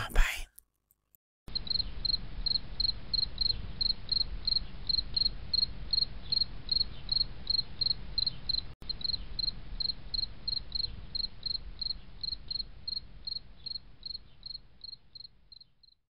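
A cricket chirping steadily, short high chirps about three a second over a low rumble, fading out near the end.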